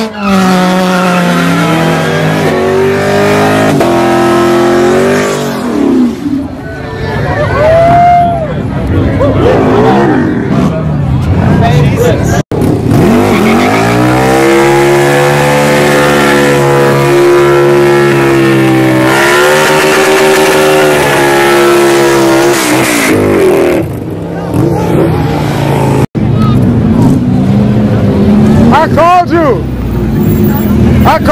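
Engines revved hard during street burnouts, the pitch climbing and dropping, with tyre squeal. In the middle a motorcycle is held at high revs for several seconds while its rear tyre spins in smoke.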